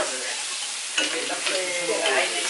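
Steady sizzling hiss of food cooking on tabletop portable gas stoves in a restaurant, with a sharp utensil click about a second in and faint chatter behind.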